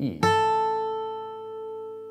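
Steel-string acoustic guitar, capoed at the second fret: one high note is picked on the first string at the third fret and left to ring. It fades slowly over the faint lower strings of the held chord.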